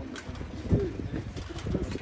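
A pigeon cooing, a few low coos, the clearest about two thirds of a second in.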